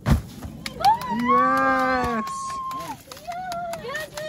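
A heavy thud as a climber drops onto a bouldering crash pad, followed about a second later by a long drawn-out wordless cry from a person, and a shorter, higher cry near the end.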